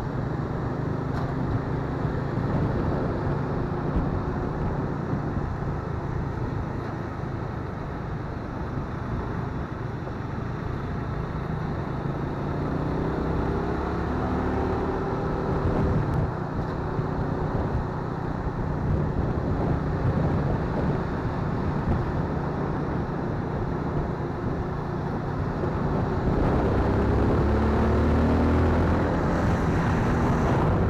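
A motorcycle engine running, with road and wind noise, while riding at low speed behind a pickup truck. Near the end the engine note rises and grows louder as the bike accelerates to overtake.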